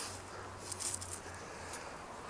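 Faint background noise with a low steady hum and a few small ticks.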